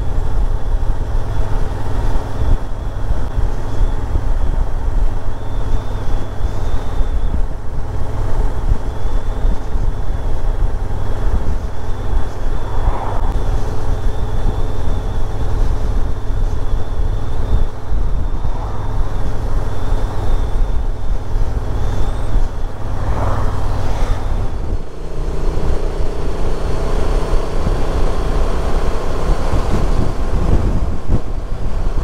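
Honda XL750 Transalp's parallel-twin engine running on the move, with a steady low rumble of engine and road noise picked up by a bike-mounted action camera. About 25 seconds in the sound changes suddenly to a steadier engine note at higher cruising speed.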